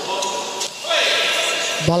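A goalball thrown along the court with its internal bells jingling, growing louder about a second in as the ball reaches the goal. The ball then strikes the goalpost.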